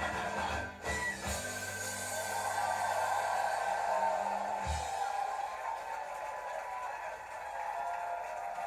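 Irish folk band's acoustic guitars, banjo and double bass ending a song on a held final chord that cuts off sharply about four and a half seconds in, with audience noise swelling beneath and after it. Heard through a television's speaker.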